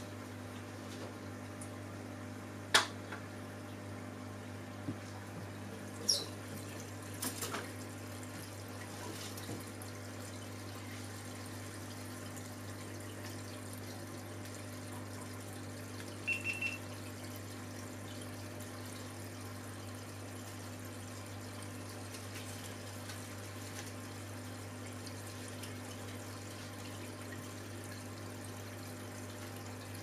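Aquarium water running and trickling steadily over a constant low hum from the filter pump. A few sharp clicks come in the first eight seconds, the loudest nearly three seconds in, and a short high beep sounds about sixteen seconds in.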